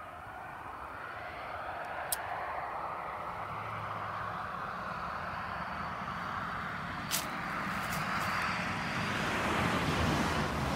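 A distant passing vehicle: a steady rushing noise that grows slowly louder, with two sharp clicks, one about two seconds in and one about seven seconds in.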